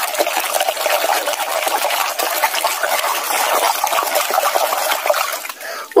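Muddy water sloshing and splashing in a bucket as a hand vigorously scrubs a plastic toy mask under the surface, a continuous churning splash that dies down just before the end.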